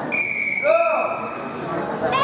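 A steady high tone, held for nearly two seconds, with a short shout in a young voice, rising then falling in pitch, under a second in.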